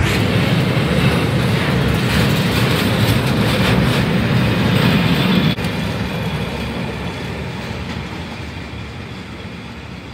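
A freight train's wagons, flat cars loaded with rails, rolling past close by with a loud, steady rumble of wheels on track. About five and a half seconds in, the sound drops suddenly. It then fades steadily as the last wagon rolls away.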